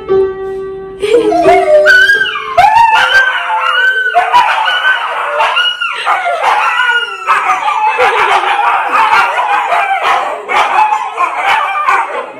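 Several Siberian huskies howling together to an upright piano, their overlapping cries gliding up and down in pitch. A held piano note rings for about the first second before the howling takes over.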